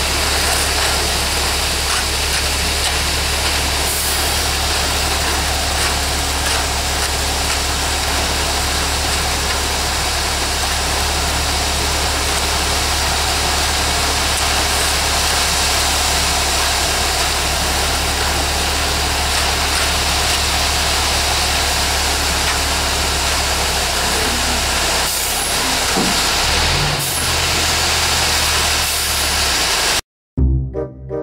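Diesel engine of a ready-mix concrete truck running steadily during a pour, a constant low hum under a wide rushing noise. The engine note shifts briefly near the end.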